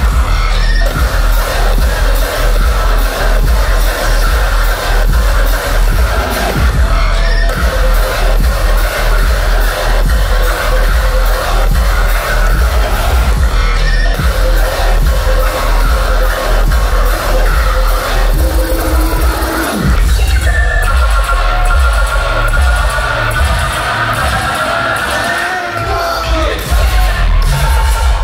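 Loud dubstep with heavy sub-bass, mixed live on DJ decks. About twenty seconds in the bass falls away into a break carried by a bending synth line, and the full bass comes back just before the end.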